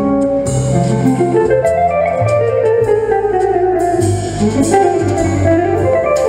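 Live jazz-blues music: a guitar plays a melodic line over bass notes, with a phrase that glides up and back down near the end.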